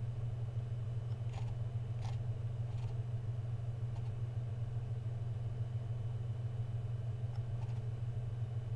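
A steady low hum throughout, with a few faint, short clicks from a computer mouse being used to scroll and click through a desktop menu.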